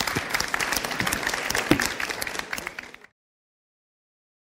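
Audience and panelists applauding, a dense patter of many hands clapping that thins and fades over about three seconds, then cuts off suddenly.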